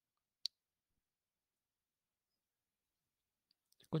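A single short, sharp click about half a second in, then near silence.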